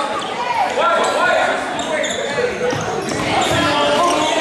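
Basketball being played in a gym: a ball bouncing on the hardwood floor, sneakers squeaking and players' indistinct calls, all echoing in the large hall.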